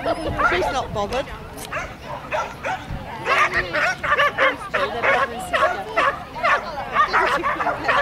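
A dog barking over and over, the barks coming faster and louder from about three seconds in.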